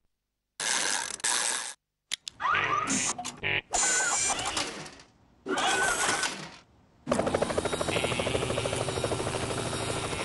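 Cartoon sound effects: a few short bursts with sliding whistle-like tones, split by brief quiet gaps. From about seven seconds in comes a steady, rapid mechanical clicking whir, like gears or a ratchet, for an animated robot.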